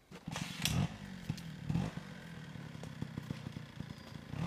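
A small engine, like a motorbike's, starts up suddenly just after the start and runs with uneven surges in revs, twice rising and falling.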